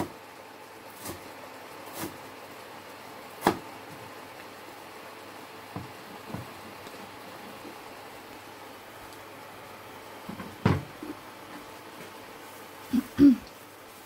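A few scattered knocks of a cleaver against a wooden chopping board, irregular rather than a steady chopping rhythm, over a faint steady hiss. The loudest knock comes a few seconds in, and two more close together come near the end.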